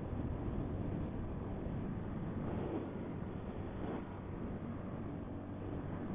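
Big Boy TSR 250 motorcycle cruising at a steady speed: a steady engine drone mixed with wind and road noise on the rider's microphone.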